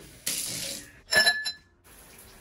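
Shower water spraying briefly, then a sharp clink of glass about a second in, with a short ringing tone.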